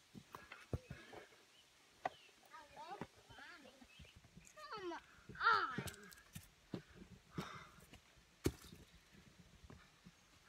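Footsteps and scuffs of someone scrambling up a rocky slope on foot: scattered knocks and scrapes on stone, with one sharp knock about eight and a half seconds in, and a few short, unclear voice sounds in the middle.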